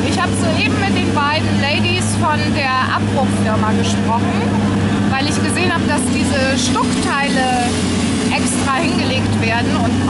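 A woman talking close up over the steady hum of an excavator's diesel engine running at a demolition site.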